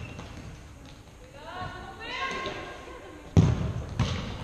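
A futsal ball struck hard once about three seconds in, a loud thud that rings around the sports hall, with a smaller knock at the end. Before it, a player shouts a call.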